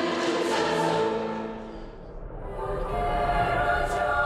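A large youth choir sings slow, held chords. One phrase fades away about two seconds in, and a new, higher chord swells up and is held.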